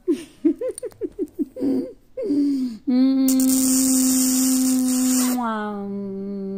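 A woman laughing in short, broken bursts, then holding one long, steady vocal note from about halfway through, with a hiss over it; the note drops slightly in pitch near the end.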